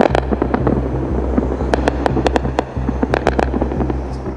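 Anti-aircraft gunfire over a city at night: many sharp, irregular cracks in quick succession, over a steady low hum.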